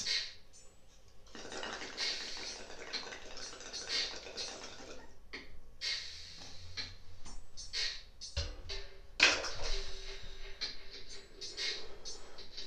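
Water bubbling in a glass bong as smoke is pulled through it, a rough rattling bubbling for about four seconds, over quiet background music. A long breathy exhale follows near the end.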